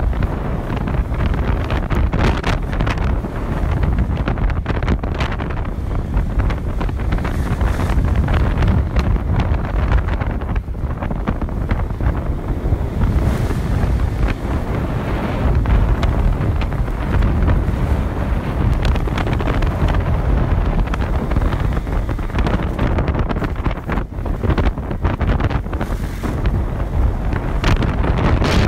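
Loud, steady wind rush buffeting a phone's microphone while riding a motorbike, a deep rumbling roar with no clear engine note standing out.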